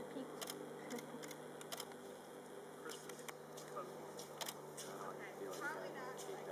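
A DSLR camera's shutter clicking several times at irregular intervals, over faint distant voices and a steady low hum.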